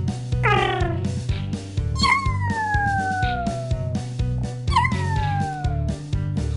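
Crow calling over background music with a steady beat: a short falling call, then two long, drawn-out wails that slide down in pitch, about two seconds each.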